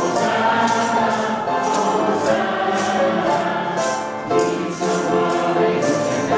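Church choir and congregation singing a hymn together in full voice, with a steady percussive beat underneath.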